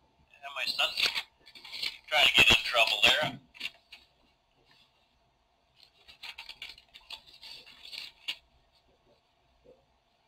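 Indistinct voices in short bursts, louder in the first few seconds and fainter later, over a faint steady tone.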